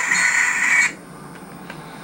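Model train locomotive's small electric motor running with a steady high whine and hiss, then cutting off abruptly about a second in. The locomotive is not running right.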